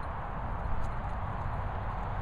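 Steady outdoor rushing noise with a fluttering low rumble, typical of wind buffeting a phone's microphone.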